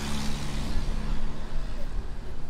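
Street noise: a steady low engine hum from traffic, over a low rumble, with faint voices from people nearby.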